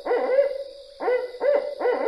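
Barred owl giving its 'who cooks for you' hooting call: a rhythmic run of hoots in two phrases, leading into a drawn-out falling note at the end.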